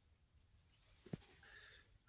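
Near silence: quiet room tone, with one faint short click a little over a second in.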